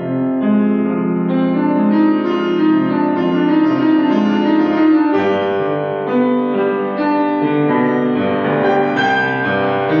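Grand piano played solo, with held chords under a melody. The harmony and bass move to a new chord about five seconds in.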